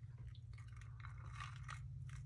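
Quiet room tone: a steady low electrical hum, with faint scattered small clicks and a soft rustle about halfway through.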